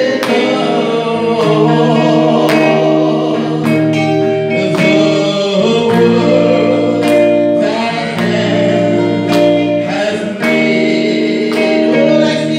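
A woman singing a gospel worship song into a microphone over instrumental accompaniment with guitar, long held notes over a regular beat.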